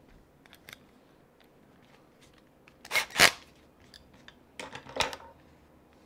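Cordless drill driving small screws into a plastic RC axle's differential cap in two short bursts, the louder about halfway through and another near the end, with a few light clicks of handling before them.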